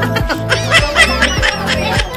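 A woman laughing over background music with a steady beat.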